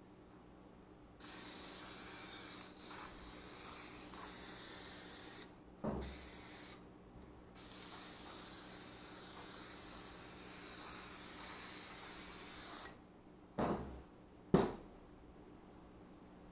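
Aerosol can of 3M Super 77 spray contact adhesive spraying in several long hissing passes, with short pauses between them. A sharp knock comes between two passes, and two more knocks come near the end.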